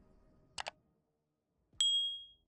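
Subscribe-button animation sound effects: a quick mouse double click about half a second in, then a bright bell ding near the end that rings on.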